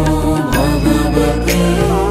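Devotional music: a sung mantra over a steady low drone, with a few light percussive strokes.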